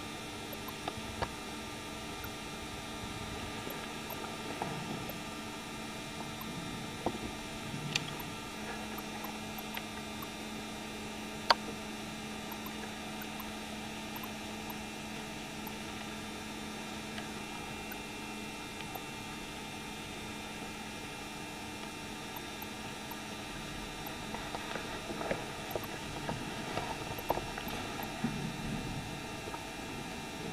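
Quiet room tone: a steady electrical hum and hiss. A few isolated sharp clicks break it, the loudest about eleven seconds in, and there is a spell of small crackles and rustles near the end.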